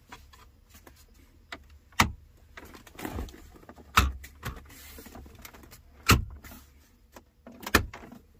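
Plastic centre-console trim of a BMW E70 X5 being pressed down by hand, its clips snapping into place: four sharp snaps about two seconds apart, with a few fainter clicks between.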